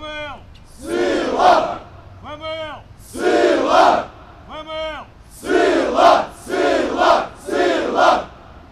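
A single man's drawn-out call answered by a large group of cadets shouting together in unison, in time with their push-ups. There are three calls, each followed by a loud group shout. Near the end the group shouts come about once a second on their own.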